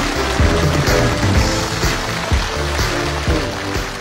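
Background music with a steady beat, about two beats a second, over a bass line.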